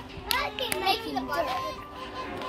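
Children playing: a young child's voice talking briefly for about a second, not long after the start.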